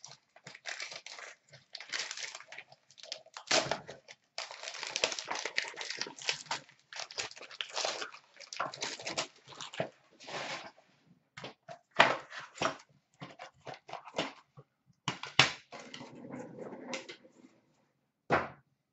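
Gold foil wrapping crinkling and tearing as it is pulled off a box, then a white cardboard box being handled and opened: an uneven run of rustles, rips and scrapes with short pauses.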